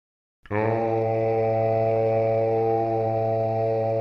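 A deep voice chanting a Tibetan Buddhist mantra syllable as one long, steady low tone, beginning about half a second in after a moment of silence.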